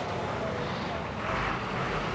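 Steady low drone of distant road traffic, swelling slightly near the end, with no distinct single event.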